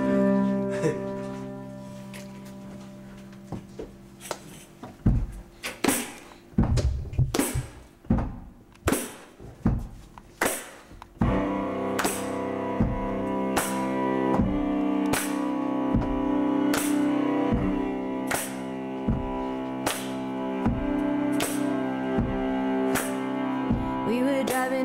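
Live acoustic band intro: a held chord fades out, then loose, irregular claps and knocks. About eleven seconds in, a sustained chord with bowed cello swells in under a steady clapped beat of roughly one and a third hits a second.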